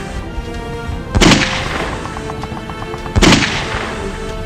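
Two gunshots about two seconds apart, each sharp and loud with a long fading echo, over background music.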